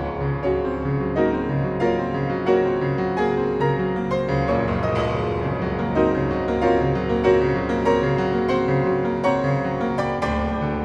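Solo piano music: a steady flow of sustained notes over a low note repeating about twice a second.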